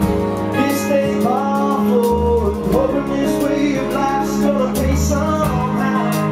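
Live band playing a song: acoustic and electric guitars, bass guitar and drums, with a man singing the lead vocal in phrases over them.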